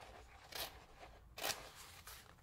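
Scissors snipping through an adhesive sheet and its paper backing: two short cuts, a little under a second apart.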